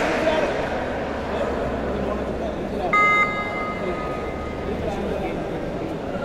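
Spectator chatter and voices throughout, with one short, sharp referee's whistle blast about halfway through.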